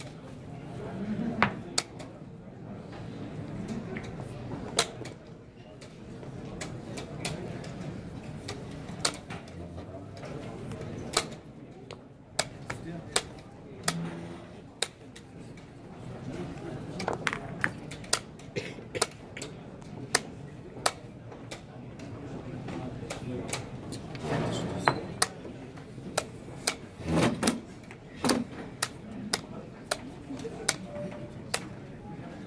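Rapid, irregular sharp clicks of wooden chess pieces being set down and chess clock buttons being pressed in fast blitz play, dozens of them, over a low murmur of voices in a hall.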